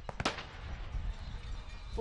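Two sharp pops in quick succession a fraction of a second in, over a steady low rumble of wind on the microphone.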